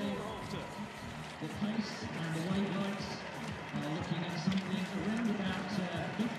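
Stadium ambience: a steady murmur of distant, indistinct voices over open-air background noise.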